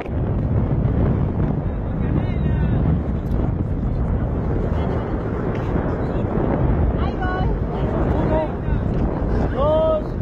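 Wind buffeting the camera microphone, a loud steady rumble, with a few short voice calls around the middle and again near the end.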